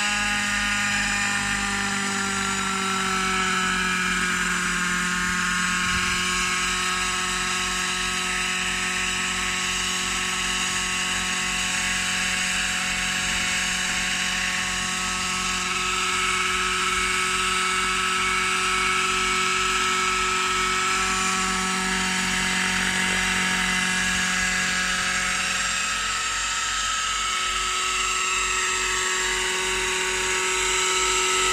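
Hirobo Eagle radio-controlled helicopter's small glow-fuel engine and rotor running steadily in a low hover, a high-pitched whine whose pitch shifts slightly a few times as the throttle changes.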